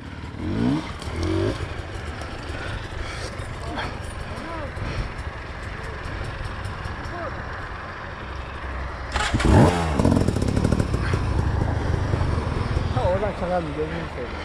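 Dirt-bike engine running steadily, from a rider attempting to climb a steep dirt slope, revving up louder about nine seconds in and staying loud to the end. Brief bits of voices come in near the start and near the end.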